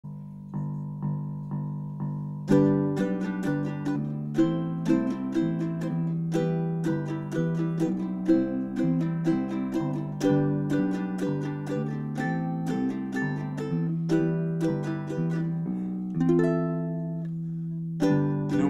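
Ukulele instrumental intro: a few soft notes, then from about two and a half seconds in, chords played in a steady rhythm, ending on a chord left to ring near the end.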